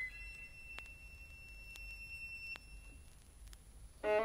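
Solo violin holding one very high note that thins out and fades after about three seconds, leaving the crackle of vinyl surface clicks and low turntable rumble. Violin and orchestra come back in right at the end.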